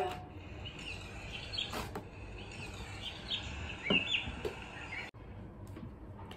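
A recorded outdoor sound effect played through a reading pen's small speaker: short bird chirps over a steady hiss, with two brief noises about two and four seconds in.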